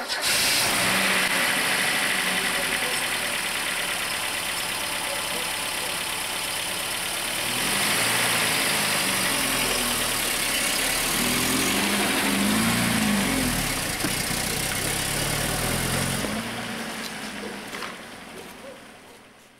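Opel Rekord C coupe's engine running, revved up and down several times in the middle, then fading away near the end as the car drives off.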